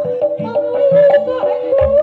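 Live jaranan pegon accompaniment: a continuous, wavering melody line over a steady pattern of drum strokes, with a deeper drum hit near the end.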